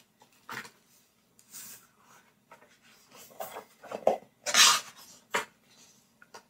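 Pages of a hardcover picture book being handled and turned: a few soft rustles and taps, with one louder paper swish about four and a half seconds in.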